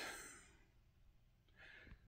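Near silence: room tone. The tail of a short breathy burst fades out over the first half second, and a faint breath-like sound comes near the end.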